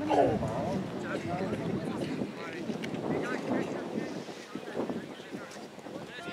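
Several people talking indistinctly, with wind on the microphone.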